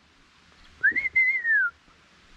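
A person whistling to call a dog: one whistled note, just under a second long, that rises quickly and then slowly falls.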